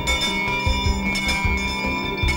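Town crier's handbell swung and rung repeatedly, its ringing carrying on between strokes.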